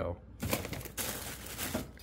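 Plastic freezer bags rustling and crinkling, with light knocks of plastic pint containers, as frozen items are shifted about in a packed freezer drawer. The rustle starts about half a second in and lasts just over a second.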